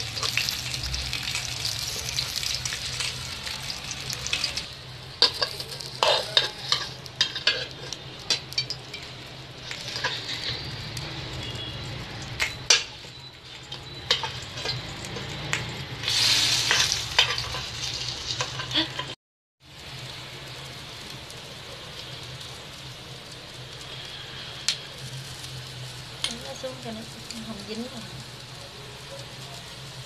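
Bánh khọt batter sizzling in the wells of an aluminium bánh khọt pan, with scattered sharp clicks and scrapes of a metal spoon against the pan as the cakes are lifted out. The sound cuts out briefly just past the middle, then a steadier, quieter sizzle carries on.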